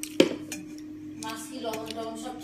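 Stainless steel dishware clinking: one sharp metallic clink a fraction of a second in, then a few fainter knocks, as a steel plate and small steel bowl are handled during a meal.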